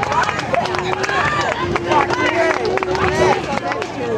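A crowd of marching-band members chattering and calling out over one another, with scattered sharp clicks and taps and no drumming.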